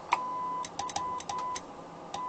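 Morse code keyed on a steady sidetone of about 1 kHz from a CW transmitter: a long dash, then a quick run of shorter dots and dashes, with a sharp click at the start and end of many elements as the rig keys.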